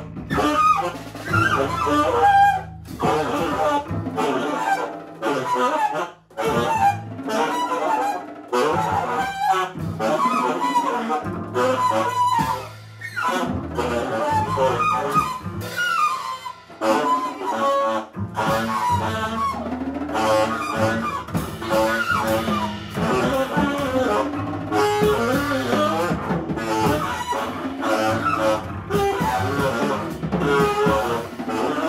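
Live free jazz trio of tenor saxophone, double bass and drum kit. The saxophone plays a wavering, bending line over sustained bass notes and busy drumming, with a brief drop-out about six seconds in.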